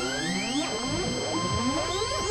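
Experimental electronic synthesizer music: many overlapping rising pitch glides over steady high drone tones, with a low buzz coming in near the end.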